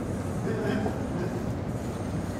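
Steady low rumble of room noise, with people talking indistinctly in the background.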